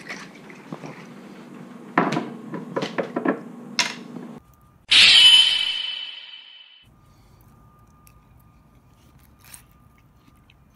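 Glass bottles and jars knocking and clinking as they are taken out of a fridge, in a quick run of sharp knocks. About five seconds in comes a bright ringing sound that fades away over a couple of seconds, followed by a faint low hum.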